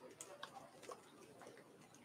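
Near silence: room tone with a few faint ticks in the first second.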